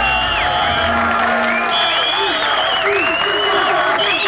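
Live concert audience applauding, with high whistles, as the band's music stops about half a second in.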